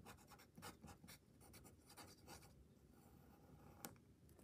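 Faint scratching of a pen writing a short word on paper, a quick run of strokes over the first two seconds or so, then a single sharp click near the end.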